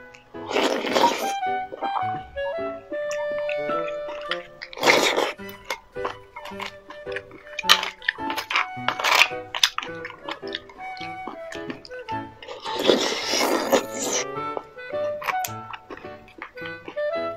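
Soft background music, over which come several noisy, wet mouth sounds of eating beef bone marrow off a spoon. The longest come about a second in and again about three seconds before the end.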